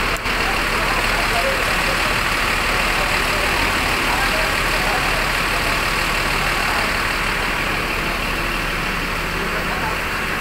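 An intercity coach's diesel engine idling steadily close by, with faint voices in the background.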